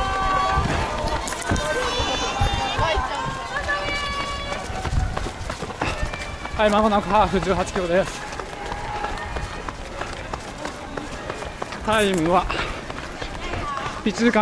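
A runner's footfalls on asphalt, with the camera jolting at each stride. Volunteers at a water station call out in high voices over the first few seconds. A voice breaks in briefly twice, about halfway through and near the end.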